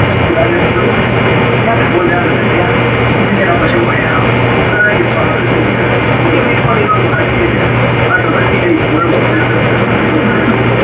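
A loud, dense, unbroken wall of overlapping voices, a babble with no single voice standing out, over a steady low hum.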